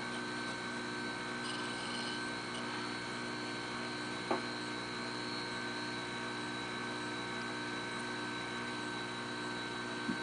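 Small electric motor of a jeweler's lathe running steadily with a hum while a carbide drill bit in a drill runner is fed into the stock; one faint click about four seconds in.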